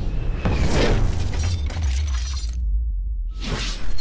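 Cinematic intro sound design: a deep bass rumble under whooshes and crashing, shattering hits. The highs cut out briefly past the middle, then a rising swell leads into a loud hit at the end.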